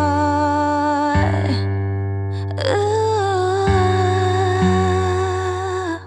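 Soul-pop ballad: a woman's voice holds two long wordless notes over steady low sustained chords.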